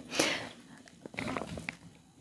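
Light handling of a tarot deck and its box on a desk: a short rustling rush just after the start, then a few faint clicks and rustles.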